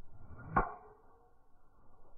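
A golf driver's clubhead strikes the ball once about half a second in, a sharp crack with a brief metallic ring, just after a short rising swish of the swing.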